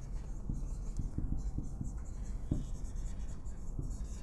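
Whiteboard marker writing on a whiteboard: the felt tip rubs faintly across the board in a series of short strokes.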